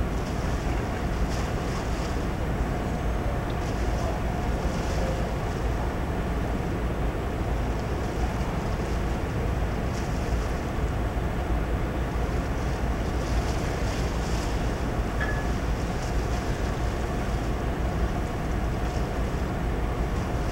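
Steady low rumble and wind hiss, with a faint steady hum running under it.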